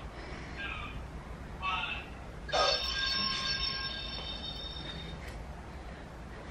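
A bell-like chime rings once about two and a half seconds in and fades away over about two seconds: an interval-timer signal marking the start of a work round.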